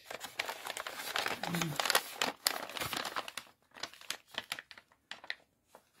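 Gift-wrapping paper crinkling and rustling as a wrapped present is picked up and handled. The crinkling is dense for the first three seconds or so, then thins to a few scattered crackles.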